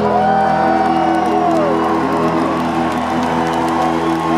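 A live rock band holds a loud, steady closing chord from electric guitar and keyboards, with cheering and whooping from a large arena crowd rising over it as the song ends.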